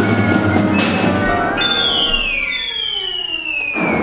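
Chamber ensemble playing a contemporary opera score. A busy passage with sharp percussion strikes gives way, about a second and a half in, to high sustained tones sliding steadily downward in pitch for about two seconds. A sharp percussion hit cuts them off near the end.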